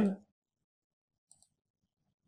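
Near silence, with one faint, short computer mouse click just past a second in as an option is picked from a dropdown menu.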